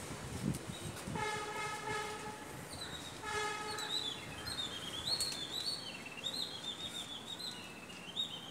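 A vehicle horn sounds twice, a long steady honk and then a shorter one, after a few low knocks at the start. From about three seconds in, a bird sings a run of high warbling chirps until the end.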